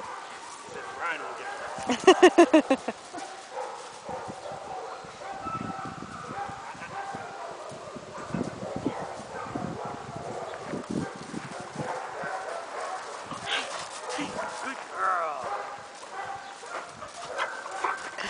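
A black puppy playing fetch gives a quick run of about six sharp yips about two seconds in, then a few shorter yelps later on, over steps and paws crunching on gravel.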